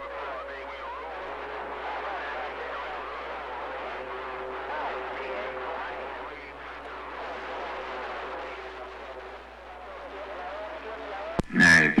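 A weak, distant station received over a CB radio's speaker: a voice buried in static, too garbled to make out, fading in and out, with two steady faint whistles under it. It cuts off sharply near the end.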